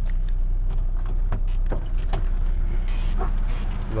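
Chevrolet S10's four-cylinder flex-fuel engine idling steadily, a constant low hum heard from inside the cab, with a few light clicks and knocks scattered through.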